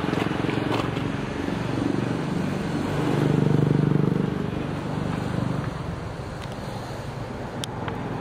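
Street traffic: a motor vehicle's engine running as it passes, a low hum that swells to its loudest about three to four seconds in and then fades.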